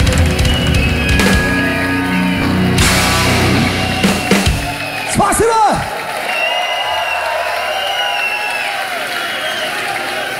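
A metal band playing live, with guitars and drums, ends a song about four and a half seconds in, with a swooping pitch glide at the end. The crowd then cheers and whistles.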